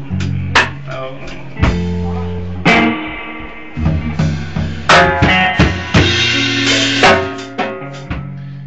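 Live band playing an instrumental passage between sung lines: a drum kit striking about once a second over sustained guitar chords.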